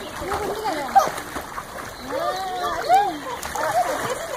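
Water splashing as children swim and paddle in a pool, with several voices calling out and chattering over it throughout.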